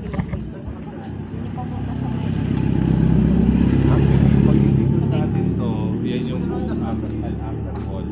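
A car passing close by, its engine and tyres growing louder to a peak about four seconds in, then fading away.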